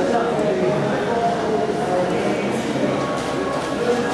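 Indistinct chatter of several voices at a steady level, with no clear sound from the sand work itself.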